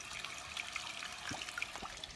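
Faint, steady trickle of water, from a livestock waterer refilling as cattle drink from it.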